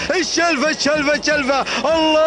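A man's excited race commentary in Arabic, fast and animated speech with rising and falling pitch.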